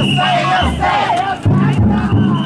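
Bearers of a chousa festival float shouting a chant together over the big taiko drum on the float. The drum strikes heavily near the start and again about a second and a half in, ringing low between the strokes.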